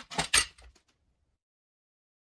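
A few sharp clicks and a brief scrape, loudest about a third of a second in, as a compact router's motor unit is handled and released from its base.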